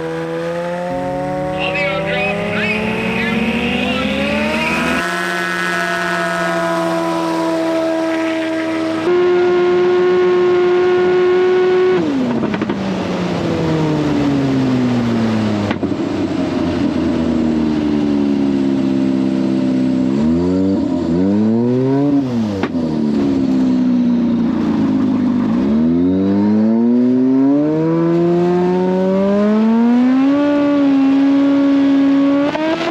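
Single-engine Highlander STOL bush plane racing. The piston engine and propeller rise in pitch to full power, then fall as power is pulled back, with a brief rise and fall in the middle. Near the end the pitch climbs again toward full power. The sound jumps abruptly in a few places where the footage is cut.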